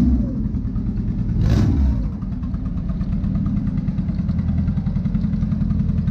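A lowered Honda Civic EK hatchback's engine running low and steady as the car creeps along at walking pace. There is one brief louder swell about one and a half seconds in.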